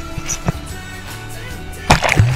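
Background music with sustained notes; near the end a sudden loud rush of seawater as a wave washes over the board-mounted camera.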